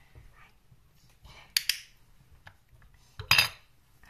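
Two sharp metallic clicks, each a quick double, about a second and a half apart, the second one louder.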